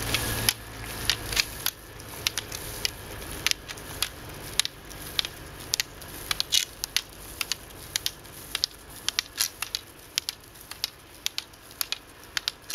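Roller-ski pole tips striking wet asphalt: sharp, irregular clicks a few times a second from two skiers poling, over a faint steady road noise. A low rumble underlies the first second or so.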